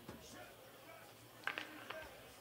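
Quiet pause with faint voices in the background, and two short clicks near the end.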